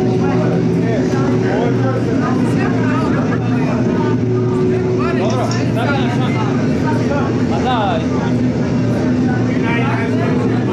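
Live electronic ambient set: a layered drone of steady low tones, with many short warbling, voice-like pitch glides rising and falling over it.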